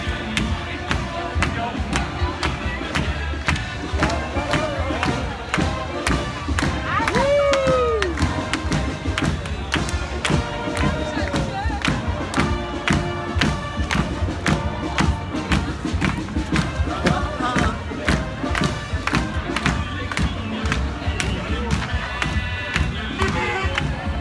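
Loud music with a steady beat, about two beats a second, over a cheering street crowd; someone lets out a rising-and-falling whoop about seven seconds in.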